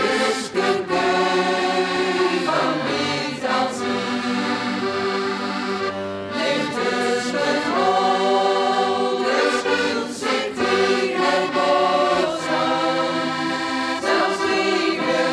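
A mixed folk choir singing in chorus, accompanied by two button accordions, in sustained phrases with short breaks between them.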